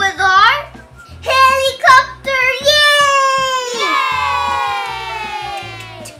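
A child's voice: a few short excited calls, then one long drawn-out "yeeeey" cheer that slowly falls in pitch over about three seconds and fades out near the end. Background music with a steady beat runs underneath.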